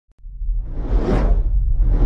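Cinematic intro sound effect: a whoosh that swells and peaks about a second in, over a deep low rumble.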